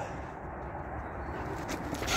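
Low, steady background rumble with a few faint soft taps, and no distinct event standing out.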